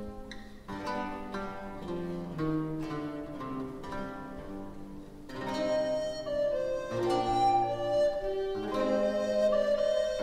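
An early-music consort playing a Renaissance piece on period instruments. It opens with quick plucked-string notes, and about five seconds in, held melody notes join and the music grows louder.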